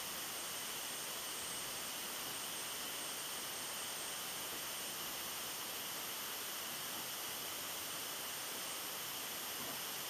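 Steady, even hiss with no distinct sounds: background noise of an outdoor recording, with no audible deer or voices.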